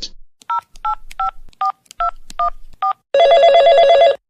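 A telephone number being dialed on a touch-tone keypad: seven short beeps, each two notes at once, about three a second. Near the end a telephone starts ringing with a fast trill.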